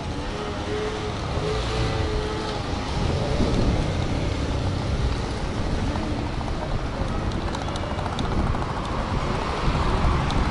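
Road traffic running along the street alongside, a steady rumble that swells about three seconds in, with wind buffeting the microphone.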